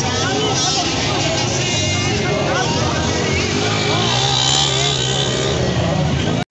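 Small motorcycle engines running close by, a steady low engine hum that grows a little stronger in the second half, mixed with the voices of a crowd.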